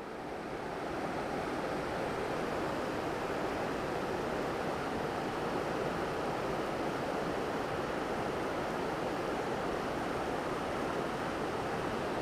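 Steady rushing of a fast-flowing river.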